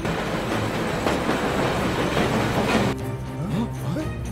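A vehicle rattling and rumbling past close by for about three seconds, cutting off suddenly, with background music.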